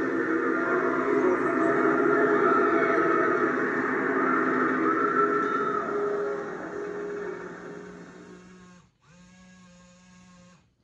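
The Spirit Halloween Mr. Dark animatronic's eerie soundtrack playing through its built-in speaker: a dense drone of layered tones that fades out over the last few seconds as its routine ends, then cuts off, leaving a faint steady hum.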